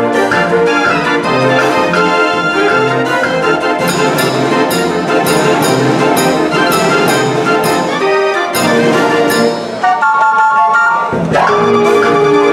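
A 52-key Verbeeck/Verdonk street organ fitted with an added set of trombones, playing a tune with bass notes and regular drum strokes. About ten seconds in the bass and drums drop out for a moment, leaving only the higher pipes, before the full organ comes back in.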